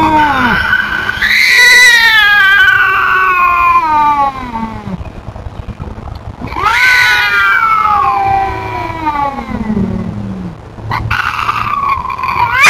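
Feral domestic cat yowling at an intruding cat in a territorial face-off: two long, drawn-out warning yowls, each sliding down in pitch. The first lasts about five seconds and the second starts about six and a half seconds in.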